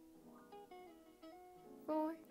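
Soft instrumental background music, a slow line of plucked guitar notes.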